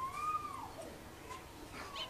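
A single long animal call, one drawn-out tone that rises slightly and then slides down in pitch, fading out under a second in.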